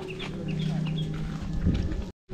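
Bird calls: a run of short high chirps in the first second, over a steady low hum that starts about half a second in and fades about a second later.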